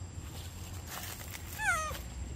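A monkey gives one short, squeaky call near the end, wavering and falling in pitch.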